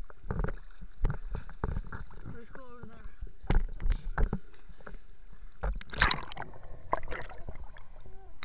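Lake water splashing and lapping against a camera held at the surface by a swimmer, with irregular knocks and splashes, the loudest about six seconds in.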